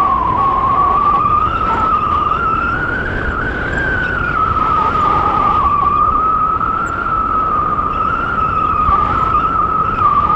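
Wind rushing over the camera microphone in flight on a tandem paraglider: a steady rumble with a high whistle that wavers slightly in pitch.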